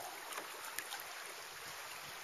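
Water lapping, with a few small drips and splashes over a steady hiss.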